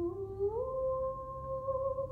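A single voice humming a held, nearly pure note that slides up about a fifth half a second in and then holds steady.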